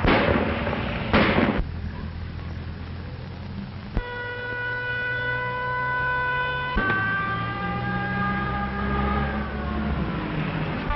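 Two short, loud bursts of noise in the first two seconds. Then a car engine rumbles under a police siren that starts about four seconds in, holding one steady pitch. The siren shifts to another pitch near seven seconds and begins to slide down near the end.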